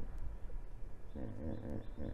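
A single wavering animal call lasting just under a second, starting about halfway through, over a steady low wind-like rumble. Faint short high-pitched tones sound alongside the call.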